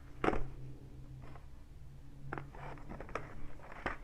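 Scissors cutting a crinkly plastic toy package: a handful of short separate snips and crinkles, the strongest just after the start, over a faint steady low hum.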